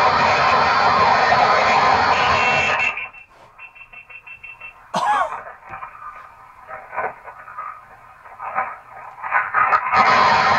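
A recorded audio clip playing back from a laptop, which the listeners take for a scream caught on a GoPro. It opens with a loud, harsh burst of noise that stops about three seconds in, has a short sliding cry about five seconds in, and the harsh noise comes back near the end.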